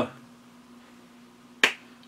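Quiet room with a faint steady hum, broken about one and a half seconds in by a single sharp click.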